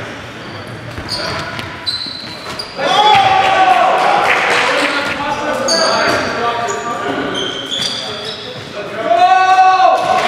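A basketball bouncing on a gym floor amid sneaker squeaks, with players' voices echoing in the hall; the voices get louder about three seconds in and again near the end.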